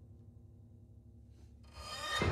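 Quiet, low rumbling drone from amplified pianos and percussion, with a fast flickering pulse in the bass, swelling quickly near the end toward a loud stroke.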